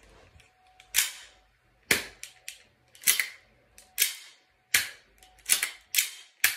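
Green-gas-powered Knightshade Lancer airsoft pistol firing single shots, about one a second, seven in all, each a sharp short report.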